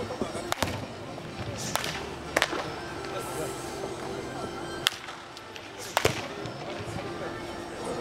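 Sharp cracks of baseball bats hitting balls in the batting cages, about six at uneven intervals, over background music and voices.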